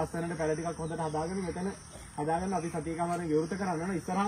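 A man speaking Sinhala, with a short pause about halfway through. A steady faint high hiss lies underneath.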